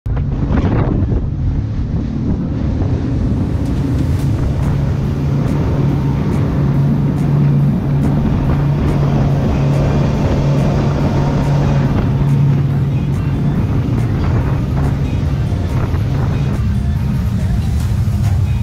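Outboard motors of a center-console boat running at speed, a steady low drone, with water rushing past the hull and wind on the microphone.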